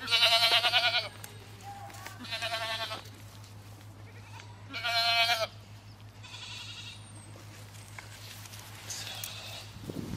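A goat bleating: three loud, quavering bleats of about a second each in the first half, then two fainter ones later.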